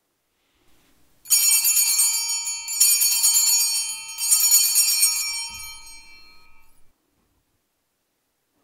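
Altar bells (Sanctus bells) shaken three times, each stroke a bright cluster of ringing tones that dies away before the next, marking the elevation of the chalice at the consecration.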